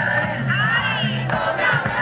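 Carnival street-parade music with percussion, and a crowd shouting over it; a shout rises and falls in pitch about halfway through.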